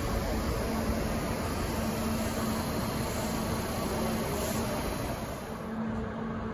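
Steady hum and whir of stationary, coupled Kintetsu limited-express electric trains idling, with a low tone that fades in and out.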